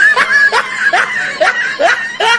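Snickering laughter: a run of short, rising 'heh' laughs, about two a second.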